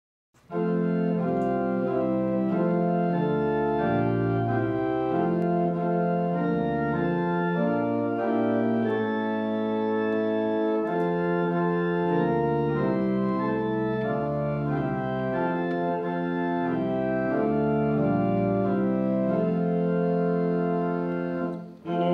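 Church organ playing a hymn tune in full, held chords that move from one chord to the next, over a low bass line. It starts just after the beginning and breaks off briefly near the end.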